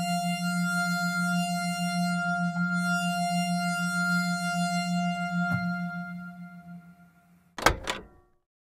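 A single sustained bell-like synthesizer note from Apple's AUMIDISynth bell patch, played from a Roland A-49 MIDI keyboard, with the modulation lever pushed to add a regular wobble. The note holds steady, then dies away near the end, followed by two short clicks.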